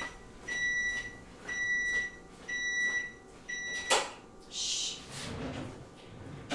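Oven timer beeping, one steady high beep about every second, each about half a second long. The beeping stops with a click about four seconds in, followed by a brief hiss and a soft thump.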